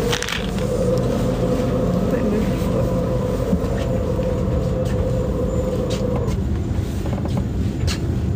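Electric commuter train running, heard from inside the carriage: a steady rumble with a humming tone that stops about six seconds in.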